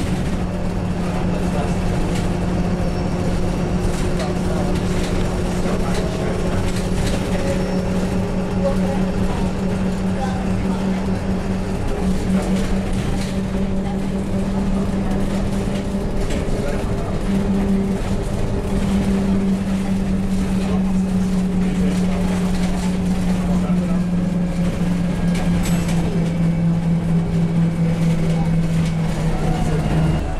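Inside a single-deck bus while it drives: a steady low engine and drivetrain hum over a continuous rumble. The hum shifts slightly in pitch partway through and sinks a little near the end.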